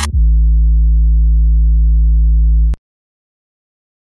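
The song ends on one low bass note, a steady electronic drone held for about two and a half seconds, then cut off abruptly into silence.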